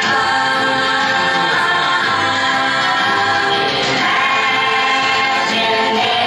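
Choir singing in long held notes, part of a ride soundtrack played back over loudspeakers in a room.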